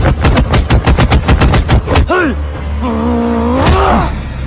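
A rapid flurry of punch sound effects, about eight hits a second, stopping about two seconds in. A long, wavering cry follows, falling and then rising again near the end.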